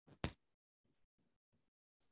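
Near silence, broken by one short, sharp click about a quarter second in.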